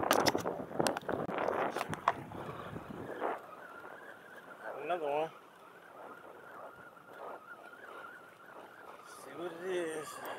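Close handling noise as a just-caught croaker is gripped and unhooked by hand: rustling and sharp clicks for the first three seconds. After that it is quieter, with a faint steady high whine and two short voice-like sounds, one about halfway and one near the end.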